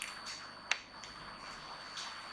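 One sharp click about two-thirds of a second in, with a smaller one right at the start, over a faint steady hiss: handling noise from a wired headset microphone just taken off.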